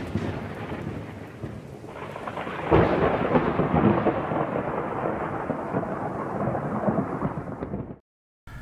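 Thunderstorm: steady rain with rolling thunder and a loud thunderclap about three seconds in. It fades and cuts off abruptly at the end.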